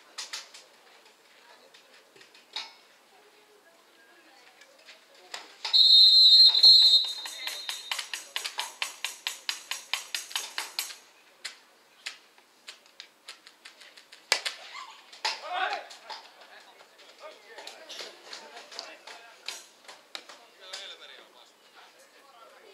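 A loud whistle blast lasting about a second, followed by about five seconds of quick, even clapping at roughly six claps a second, then scattered claps and knocks with a short shout.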